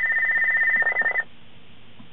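Escort 9500ci radar detector sounding its laser alert: a rapid stream of high-pitched electronic beeps that cuts off abruptly a little over a second in, when the alert is muted.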